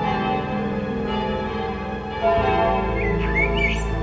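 Church bells ringing, with long overlapping tones that swell about two and a half seconds in. A common blackbird sings a short, warbling phrase near the end.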